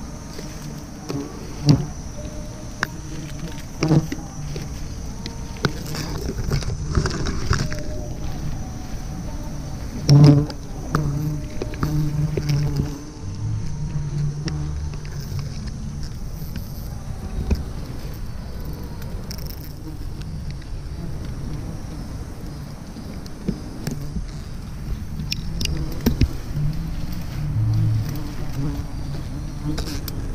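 A swarm of wild honeybees buzzing steadily around their nest as it is smoked, with the rustle of leaves and the knock of branches being pushed aside at close range; the loudest knock comes about ten seconds in.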